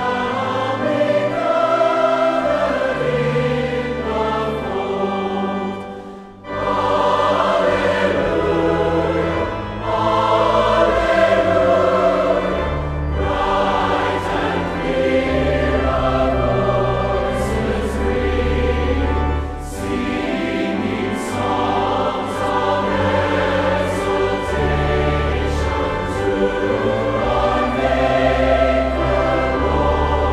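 Large mixed choir of women and men singing a hymn over sustained low notes, with a brief pause between phrases about six seconds in.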